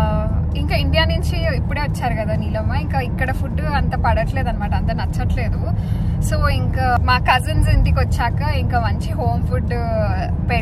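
A woman talking continuously over the steady low rumble of a car cabin on the move.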